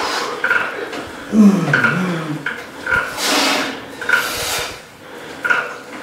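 A man straining through leg-extension reps: a groan that falls in pitch about a second and a half in, then forceful, hissing exhales.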